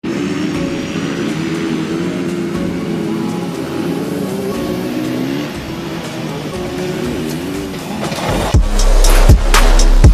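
Dirt bike engine revving up and down for about eight seconds. Then an electronic music track with deep bass and sharp drum hits kicks in loudly.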